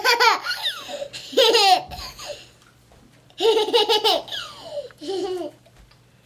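Toddler laughing in four high-pitched bursts with short pauses between them.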